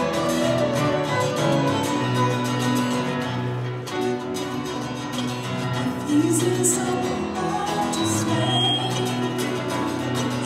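A Celtic folk band playing live, with fiddle, acoustic guitar and keyboard in an instrumental passage; a female singing voice comes in about six seconds in.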